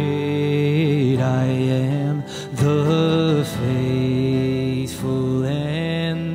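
A worship song sung in long held phrases over instrumental accompaniment, with brief breaths between lines about two seconds in and again near five seconds.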